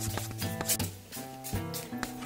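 Background music of short plucked notes with sharp, clicky attacks, several notes a second.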